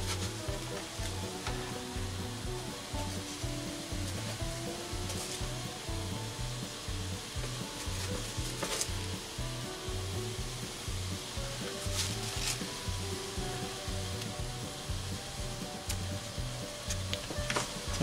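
Beer and onions bubbling and sizzling in a cast iron skillet as bratwursts are laid in. A few sharp clicks come from the sausages and tongs meeting the pan.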